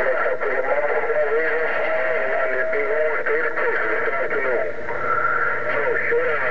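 Another station's voice coming in over a President HR2510 radio's speaker, indistinct and warbling under steady static hiss. A brief steady whistle sounds about two seconds in.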